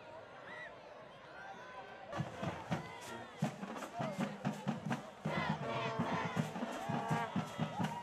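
Crowd murmur in the stands, then from about two seconds in a sudden louder stretch of cheerleaders shouting and chanting over music with a steady, even beat.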